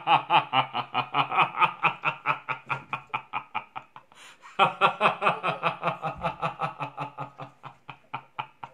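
A man laughing hard in long runs of quick ha-ha pulses, about six a second, breaking off for a breath about four seconds in and then laughing on.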